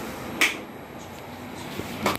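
A wall light switch being flipped on: a single sharp click about half a second in, over faint steady background noise.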